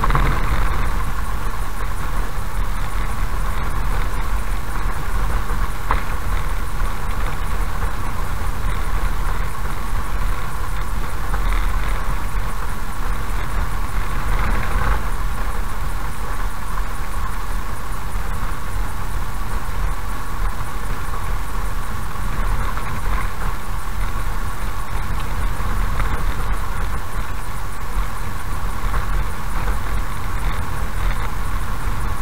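Car driving slowly on a rough dirt road, heard from inside the cabin: a steady low rumble of engine and tyres with a few faint knocks.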